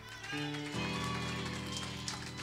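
Instrumental backing music: sustained held chords that come in about a third of a second in and swell again just under a second in, then hold steady.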